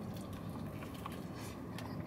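Faint eating sounds as a man bites into and chews a wrap of breaded fried fish strips: small soft clicks over a low steady background hum.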